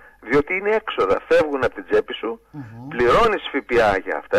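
Speech only: talk from a radio interview broadcast in Greek.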